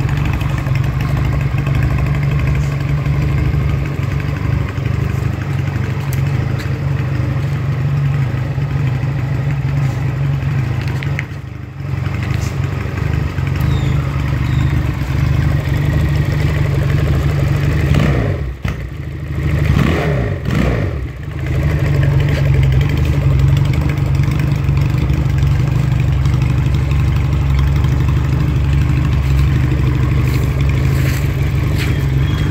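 Hunter Outlaw 400 (Regal Raptor Spyder 350) cruiser motorcycle running on its standard exhaust, idling steadily. About two-thirds of the way through, the throttle is blipped twice and the note rises and falls back each time.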